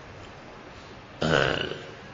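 A single short throaty sound from a man, like a burp or throat clearing, starting abruptly about a second in and fading within half a second.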